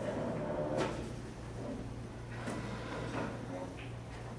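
Conference-room background: a steady low hum with faint indistinct voices, broken by a sharp click or knock about a second in and another around two and a half seconds in.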